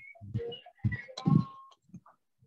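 A voice coming through a video call in short, choppy fragments with dropouts between them: the sound of a breaking-up internet connection.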